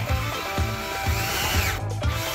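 Power drill running a twist bit into a wooden board, its whine rising and then falling before it stops shortly before the end, over background music with a steady beat.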